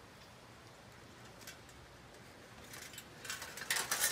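Faint hiss, then a run of short clicks and ticks that come faster and louder over the last second or so.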